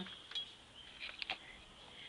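A few faint, short clicks and light clinks, one just after the start and a small cluster about a second in, over quiet room tone.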